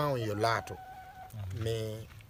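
A man's voice speaking in two drawn-out phrases, one at the start and one near the end, with a faint thin steady tone in the pause between them.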